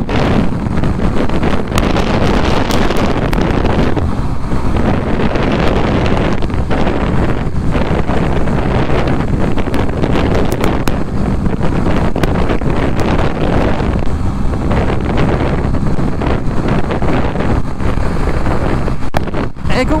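Loud wind noise buffeting the rider's microphone on a Honda CB125R motorcycle at road speed, swelling and dipping throughout, with the bike's small single-cylinder engine running underneath.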